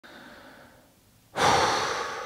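A man's faint breath, then a heavy sigh about two thirds of the way in: a sudden loud exhale that fades slowly. It is picked up close by a clip-on microphone.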